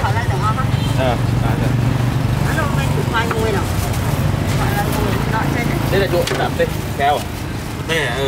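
People talking at a busy street stall over a steady low rumble of passing traffic.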